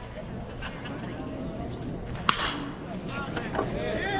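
A single sharp smack of a pitched baseball about two seconds in, with a brief ring after it, over crowd murmur and scattered voices.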